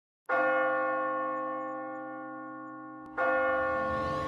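A large bell struck twice, about three seconds apart; each stroke rings out and slowly fades.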